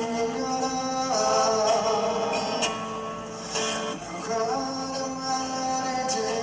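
A male vocalist singing a slow ballad live to his own acoustic guitar, in long held notes.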